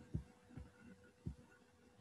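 Three faint, low thumps about half a second apart, with a faint steady hum behind them.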